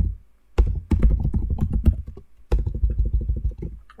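Typing on a computer keyboard: a quick run of keystrokes, with a short pause about half a second in.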